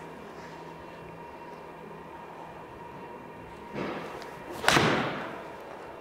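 A PXG 0317 ST blade seven-iron swung through and striking a golf ball off a hitting mat, one sharp crack about three quarters of the way in, preceded by a short swish of the downswing. The strike is slightly off the toe yet sounds way better.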